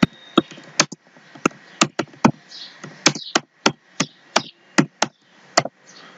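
Typing on a computer keyboard: sharp, irregular keystrokes, two or three a second.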